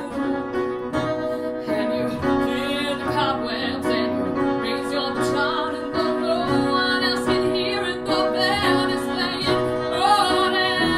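Upright piano and strummed acoustic guitar playing together, an instrumental passage of a slow song.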